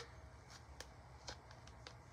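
Faint, scattered clicks and rustles of fingers pressing and adjusting an adhesive foam heel pad inside a sneaker, a few small ticks about a second apart over low room hum.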